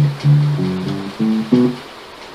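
Electronic keyboard playing a short phrase in D, starting on a low D: about six notes struck in quick succession over a second and a half, each ringing and dying away.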